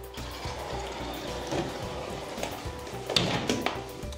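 Slide-and-turn glass door panels rolling along their track on smooth-running gear, a steady low rolling hiss. There is a knock about three seconds in.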